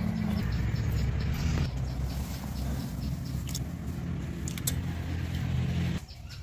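A motor engine running steadily with a low hum, its pitch shifting slightly a couple of times, and a few faint clicks over it.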